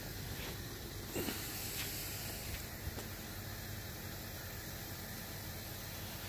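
Steady, faint outdoor background hiss with a few soft clicks and knocks.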